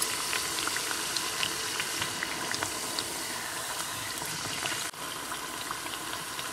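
Poricha pathiri, a rice-flour and coconut flatbread, deep-frying in hot oil in a steel pan: a steady bubbling with many small crackles.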